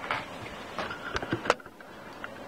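A few light clicks and knocks of objects being handled close to the microphone, the sharpest about one and a half seconds in.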